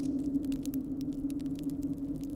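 A steady low background hum with faint scattered clicks and crackles.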